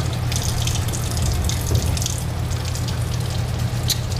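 Bathroom sink faucet running steadily, its stream splashing over a hand into the basin, left running while waiting for the hot water to come through. A steady low hum runs beneath it.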